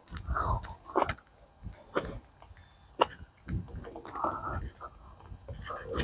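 Faint, indistinct voices in short scattered bursts, with a few sharp clicks and two brief high tones about two seconds in.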